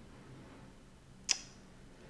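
A single sharp click about a second in, over faint low room hum.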